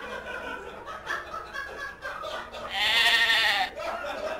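A woman imitating a goat: one loud, wavering bleat about three seconds in, lasting about a second, with laughter before it.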